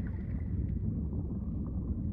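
A low, steady rumbling noise with no clear pitch.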